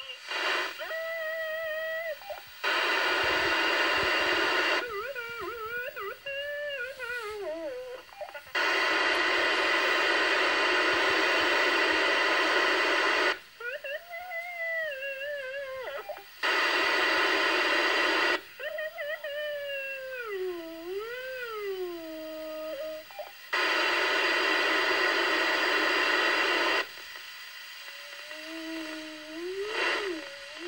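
Children's wordless voices, gliding hums and wails, heard through a Uniden Trunktracker scanner on the 462.7125 MHz FRS/GMRS channel. Four stretches of loud, steady radio hiss, lasting from about two to five seconds, break in between the voices.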